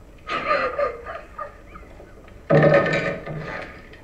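A man's voice making two short vocal sounds, one just after the start and a louder one about two and a half seconds in.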